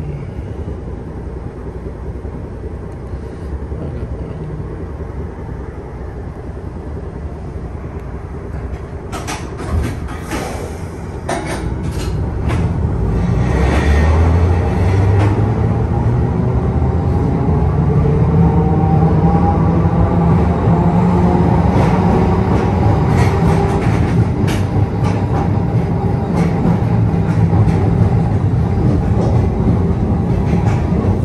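TECO Line streetcar, a replica Birney car, heard from inside the front cab. It runs with a low rumble at first, gives a few sharp clicks about ten seconds in, and then gets louder as the traction motor whine rises in pitch and the wheels and rails rumble under way.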